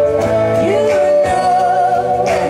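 Live band music: a woman singing over a strummed acoustic guitar, with a steady beat about twice a second.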